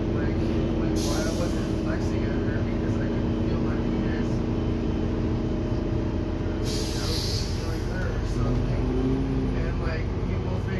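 Inside an articulated city bus: a steady low drone of the running bus with a constant hum. Two short hisses of released compressed air from the bus's air brakes come about a second in and again near seven seconds.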